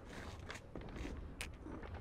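Quiet background ambience with a low, even rumble and two brief faint clicks, about half a second and a second and a half in.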